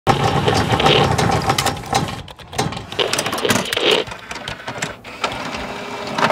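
Logo-intro sound effect of rapid mechanical clicking and whirring, with a brief dip in level a little past two seconds.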